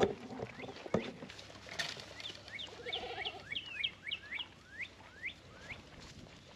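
Goats drinking from a plastic water trough, with sharp slurps and splashes in the first two seconds. Then a songbird sings a quick run of short rising chirps, about three a second, until near the end.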